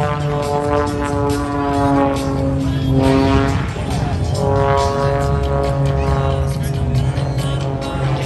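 Single-engine aerobatic propeller plane's engine droning overhead, its pitch sliding slowly lower over the first three and a half seconds, then settling into a new, steadier drone from about four seconds in.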